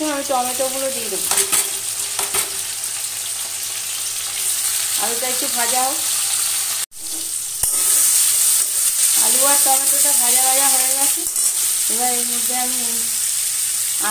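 Potato wedges frying in hot oil in a metal kadai: a steady sizzle, stirred with a metal spatula. The sound breaks off briefly about halfway, then the sizzle is louder with chopped tomato in the oil. A few short pitched sounds come and go over it.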